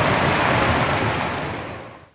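Loud, even rushing noise between segments, fading away over the last half second or so.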